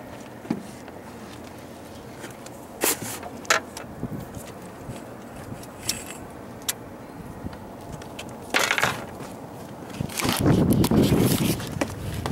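Handling and movement noise on a small boat: scattered light knocks and clatter, then a loud rustling burst near the end as the handheld camera is moved.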